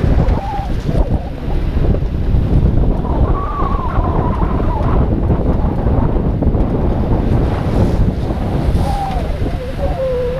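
Wind buffeting the microphone of a hood-mounted action camera on a Chevrolet Silverado driving a dirt trail, over a dense low rumble of the truck running and its tyres on the track. A faint wavering squeal comes through briefly twice, about three seconds in and near the end.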